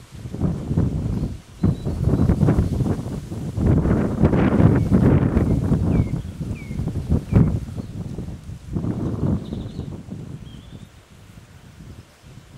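Eurasian beavers feeding close by: loud crunching and rustling as they gnaw and chew stems and leafy branches, in bouts that ease off near the end. A few faint high bird chirps come through in the middle.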